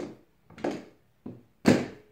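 A doorway exercise bar knocking against its door-frame mounts as it is shifted down and set into a lower rung: about four sharp knocks, the last and loudest near the end.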